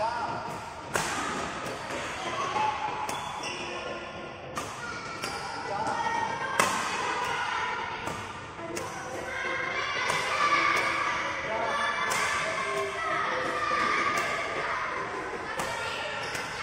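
Shuttlecocks being struck with a Li-Ning Axforce 20R badminton racket in a drill: a sharp hit every second or two, echoing in a large hall.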